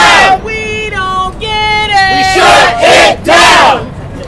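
Protest crowd chanting slogans in call-and-response. One voice calls out a drawn-out line, then the crowd shouts back twice, loudly, near the end.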